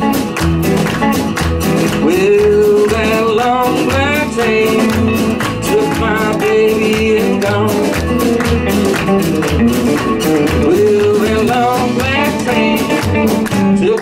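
Live rockabilly band playing an instrumental break. An electric guitar plays a lead with bent, sliding notes over steady upright bass notes and a strummed acoustic guitar.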